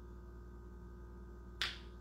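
A pause in speech: steady low hum of room tone with faint steady tones. Near the end comes a short, sudden breath-like sound just before the voice returns.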